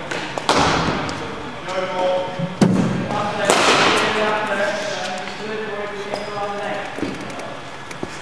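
A cricket bat striking a ball with a sharp crack about three and a half seconds in, echoing in a large indoor net hall. Lighter knocks of the ball come before it.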